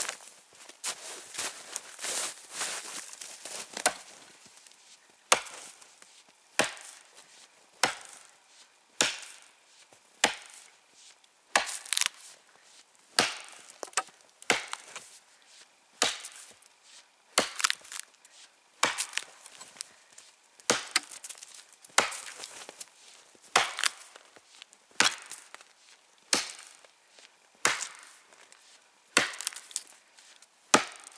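Heavy forged felling axe (Toporsib Maral 2, 1850 g head on a 75 cm handle) chopping into the base of a standing young fir, cutting the notch to fell it. The strokes are sharp and evenly paced, about one every second and a half.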